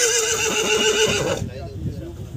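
A horse's long whinny, its pitch wavering and ending in a shaking, quavering tremble, which stops about one and a half seconds in.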